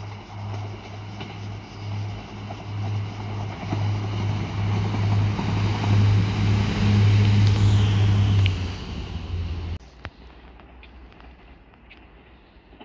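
Two Class 153 diesel multiple units approaching and passing close by: a deep, steady underfloor diesel engine note over rising wheel and rail noise, loudest as they pass beneath. The sound then drops abruptly to a much fainter, distant rumble.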